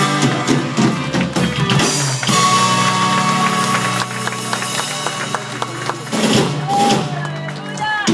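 Live norteño-style band playing in a hall, guitars with bass and drums, with a long held note through the middle and no clear singing.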